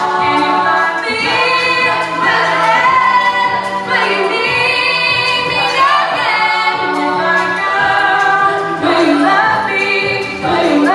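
All-female a cappella group singing: a lead voice over close backing harmonies, with a low sung bass line holding long notes.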